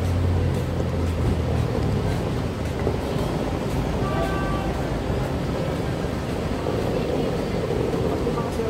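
Busy airport-curbside ambience: a steady rumble of traffic and engines under a general bustle of people, with a brief high tone about four seconds in.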